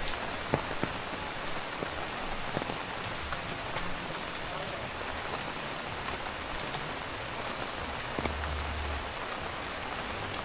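Steady rain falling, an even hiss with scattered sharper drop strikes, a few louder ones in the first second.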